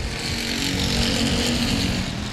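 Pure stock dirt-track race cars running at speed around the oval, their engines a steady drone that grows a little louder over the two seconds.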